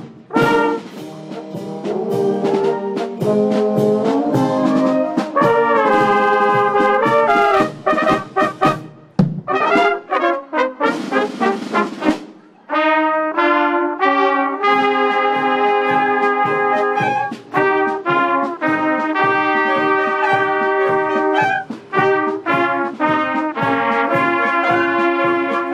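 Bavarian village wind band playing live brass folk music: flugelhorns and trumpets lead, with clarinets also playing. The music breaks off briefly about halfway through, then the band plays on.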